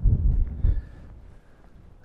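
Wind buffeting the microphone, a low rumble that is strongest for the first second and then dies down.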